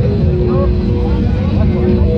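Free-party sound system playing bass-heavy techno loudly and without a break, with people's voices calling and talking over it.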